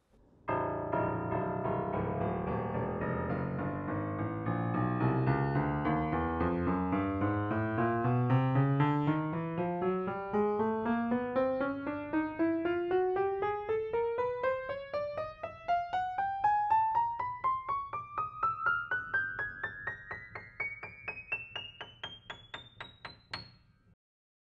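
Yamaha MX100MR upright piano played one key at a time up the whole keyboard, a steady climb from the lowest bass note to the top treble note at roughly four notes a second. It is a check that all 88 keys sound evenly, and the player judges them perfect.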